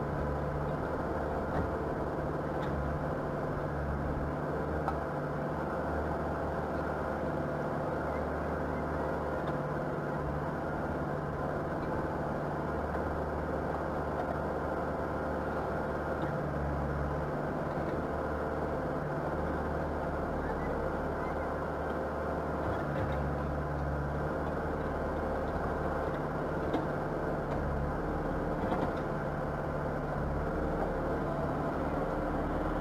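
Backhoe loader's diesel engine running steadily at idle, heard muffled with its low hum shifting slightly now and then.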